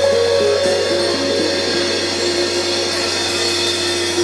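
Live band of saxophone, electric guitar, electric bass and drum kit playing; from about a second in a single note is held over a steady cymbal wash.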